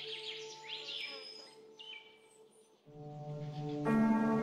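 Ambient meditation music with birdsong mixed in. Sustained tones fade out over the first two seconds while birds chirp. After a short lull with a few whistled bird notes, a low drone enters about three seconds in and a fuller chord swells near the end.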